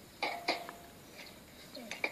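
A person coughing twice in quick succession, the two short sharp coughs about a quarter of a second apart.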